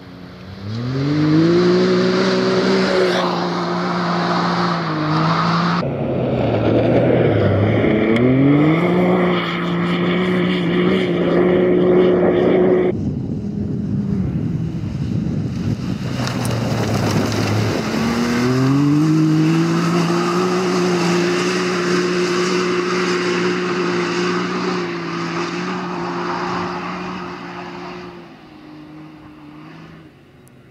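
Can-Am Maverick X3 side-by-side's turbocharged three-cylinder engine under full throttle, heard in three separate runs. Each time the revs climb quickly and then hold at a steady high pitch as the belt-driven CVT keeps the engine at the top of its range, with gravel and tyre noise underneath.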